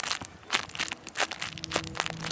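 Thin clear plastic packaging bag crinkling and crackling as fingers handle it and pull it open around a squishy toy, in quick irregular crackles.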